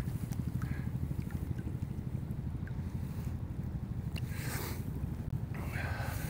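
Low, fluttering wind rumble on the microphone over shallow river water, with a few faint light splashes.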